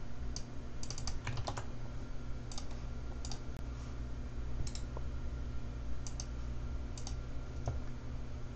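Computer keyboard keystrokes and clicks in short, scattered clusters, over a steady low hum.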